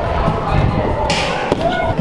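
Background voices of people in a large gym hall, with dull thumps of bodies jumping and landing on trampolines and foam mats, and one sharper knock about one and a half seconds in.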